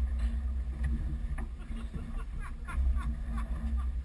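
Wind buffeting the microphone of a small boat on choppy water, with a rough low rumble, a faint steady hum, and small irregular splashes of water lapping at the hull.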